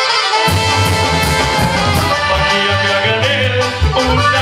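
Live band music: saxophones and accordion playing a melody over bass and drums. The bass and drums drop out briefly and come back in about half a second in.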